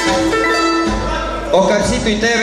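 Andean panpipes (sikus) played live with guitar, holding a long note and then stopping about halfway through; a man's voice starts talking near the end.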